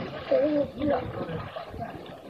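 Loud drawn-out shouts from a person's voice, about half a second in and again near one second, over a background of splashing water from swimmers in the pool.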